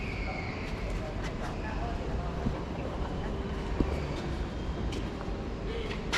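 Steady room noise with faint distant voices and a low rumble, with two short knocks midway.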